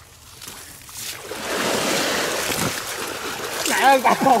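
Water splashing and churning as a person wades into a muddy canal, starting about a second in and lasting a couple of seconds; a voice calls out near the end.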